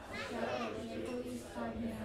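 Murmured voices of adults and children in a large room, with a steady low hum underneath.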